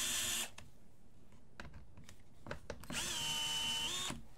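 DeWalt cordless driver backing out screws in short runs: a whine that stops just after the start, a few light clicks, then a second run about three seconds in that spins up to a steady whine.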